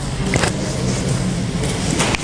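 Low, steady rumble of a motor vehicle's engine close by, with a short click about half a second in.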